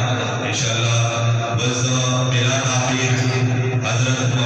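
Naat vocals chanted in long, held tones over a steady low drone, with no break.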